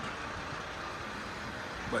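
Steady low rumble of a vehicle engine running, with a faint even hiss over it and no distinct knocks or changes.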